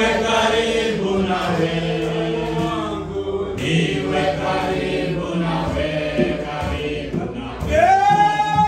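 A group of voices singing a slow hymn together in long held notes.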